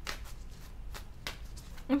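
Tarot deck being shuffled by hand, the cards giving a few soft, separate flicks and slaps as they are passed from hand to hand.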